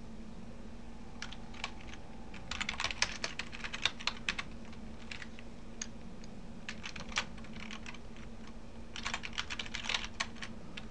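Computer keyboard typing in uneven bursts of keystrokes with short pauses between them, over a faint steady low hum.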